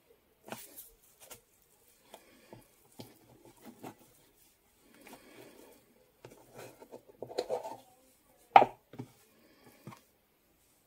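Raw beef mince being pressed, scraped and squished by hand and with a plastic press on a wooden chopping board: scattered soft squelches and light taps, with one sharper knock on the board near the end.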